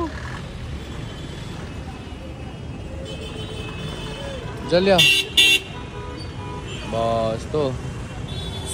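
Street traffic rumbling steadily, with a bus engine running close by. Two short, loud horn toots sound about five seconds in, and a voice calls out briefly around them.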